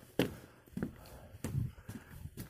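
Footsteps on a boat deck: a few short thuds about half a second apart.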